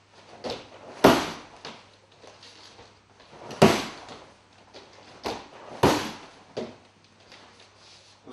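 Kicks landing on a hand-held foam kick shield: three loud smacks about two and a half seconds apart, the last the loudest, with lighter knocks between them.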